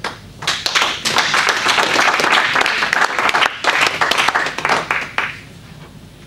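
Audience applauding at the end of a piece, starting about half a second in and dying away shortly before the end.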